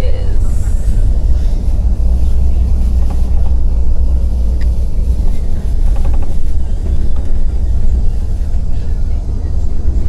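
Coach bus heard from inside the passenger cabin at highway speed: a loud, steady low rumble of engine and road noise.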